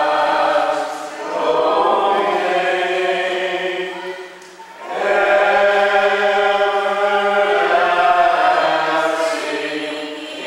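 A congregation singing a slow hymn or chant together in long held phrases, with a short break for breath about halfway through.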